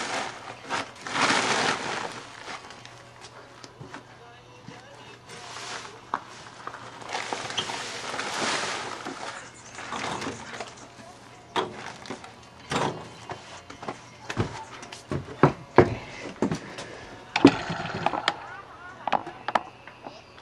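Scraping and rustling, then a run of sharp knocks and clatters through the second half, from a wheelbarrow of freshly mixed wet cob (clay, sand and straw) being handled and tipped out onto a tarp.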